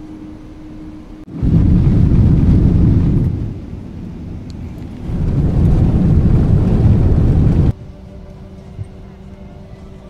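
Jet airliner engines at takeoff power heard inside the cabin: a loud, deep noise that starts suddenly about a second and a half in, eases for a moment, then swells again. It cuts off abruptly near the end, leaving a quieter steady cabin hum.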